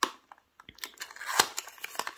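Small white cardboard box being opened by hand: scattered clicks and crackles as the lid flap is pried up. The sharpest crackle comes about one and a half seconds in.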